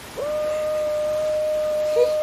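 Steady rush of a waterfall from the film's soundtrack. A man's long yell starts just after the beginning, glides up briefly, then is held on one steady pitch.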